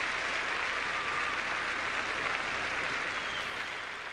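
Arena crowd applauding a figure skater, a dense steady clatter that fades a little near the end.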